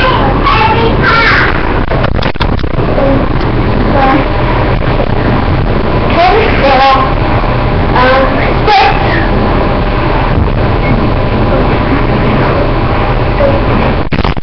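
A girl's voice chanting cheers in short bursts over steady loud background noise and hum.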